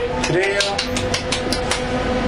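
A woman's voice over a steady hum, with a quick run of short repeated sounds about five a second.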